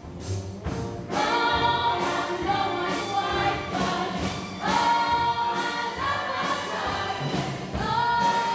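A full musical-theatre ensemble singing together in chorus, backed by a live pit orchestra, with strong accented hits. The music swells about a second in, and a held sung note comes near the end.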